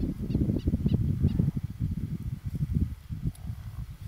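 Wind buffeting the microphone as a low rumble, with a quick run of about five faint, high chirps in the first second and a half.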